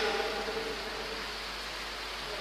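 A pause between spoken phrases: a steady even background hiss, with the echo of the last words dying away in the first half second.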